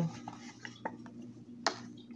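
A few light clicks and knocks of a small plastic digital pocket scale being handled and set down on a wooden table, the sharpest one near the end, over a faint steady hum.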